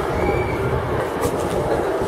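Steady outdoor city noise: a crowd murmuring and street traffic, with a constant low rumble.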